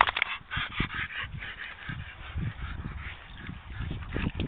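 A Staffordshire Bull Terrier plunging and rolling in deep wet mud: irregular heavy squelches and slaps of mud, mixed with a run of short vocal sounds from the dog in the first couple of seconds.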